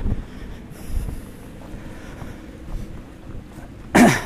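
Wind buffeting the microphone in uneven low rumbling gusts. A short loud voice cuts in right at the end.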